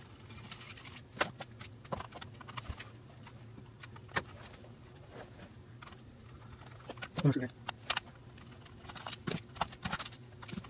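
Scattered light clicks and knocks of hands handling a portable radio's plastic case, small screws and circuit board during disassembly.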